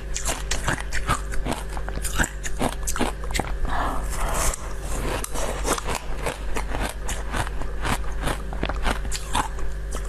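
Close-miked chewing and biting of food, a dense irregular run of small crackling clicks, over a low steady hum.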